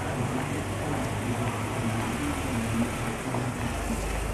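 Street ambience with a motor vehicle engine running nearby as a steady low hum, over a constant hiss of traffic and crowd noise; a deeper rumble comes in near the end.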